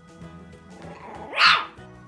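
A small puppy gives one short bark about halfway through, over steady background music.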